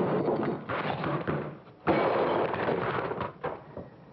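A scuffle: knocking and clattering in two noisy stretches, the first about two seconds long and the second about a second and a half.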